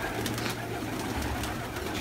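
A flock of domestic pigeons in a small loft, cooing, with several short sharp wing flaps.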